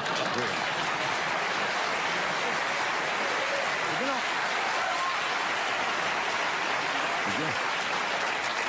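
Studio audience applauding steadily after a monologue punchline, with a voice briefly heard over it a couple of times.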